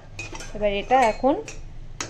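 Metal spatula clinking and scraping against a steel wok of hot oil, a few sharp knocks.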